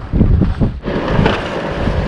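Wind buffeting the microphone in heavy gusts during the first second, then a steadier rushing noise.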